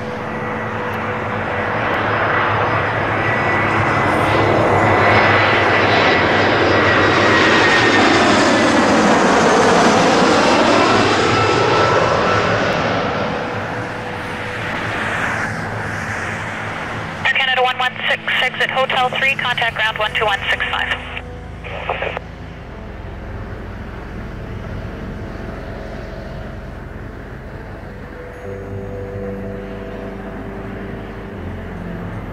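Jet engines of an Airbus A321 airliner on short final passing low overhead: the sound swells to its loudest about ten seconds in, a high whine drops in pitch as it goes by, and then the noise fades to a lower rumble.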